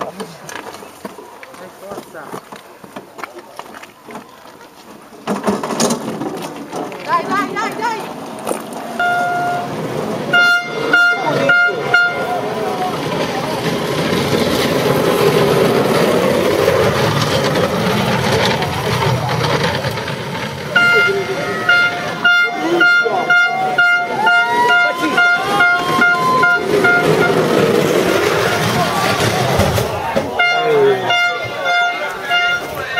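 A horn sounding in bursts of rapid, repeated toots, once about ten seconds in and again for several seconds from about twenty seconds in, over the voices of a crowd.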